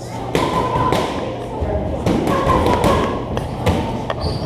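Repeated thuds and taps of boxers sparring in a ring: gloved punches landing and feet moving on the canvas, over gym chatter.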